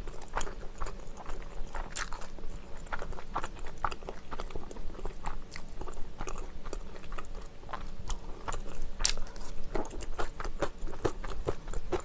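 Close-miked mouth sounds of a person eating: continuous irregular wet clicks and smacks of chewing and biting, with some crisper crunches.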